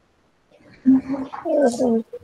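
A person's voice, brief indistinct speech or vocal sounds coming over a video-call microphone, starting about a second in after a short silence.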